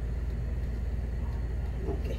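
A steady low hum in the background, with nothing else clearly heard. The batter pouring into the pan makes no distinct sound.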